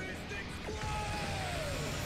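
Sound effect from an animated fight video: a single whistling tone that glides down in pitch over about a second, starting partway in, over a low hum and faint music.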